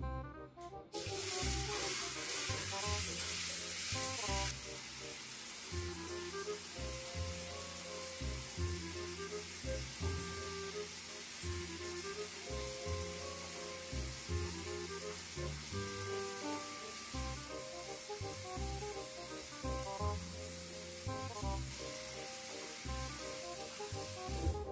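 Tap water running steadily from a bathroom mixer tap into a ceramic washbasin, turned on about a second in, over background music with a steady bass beat.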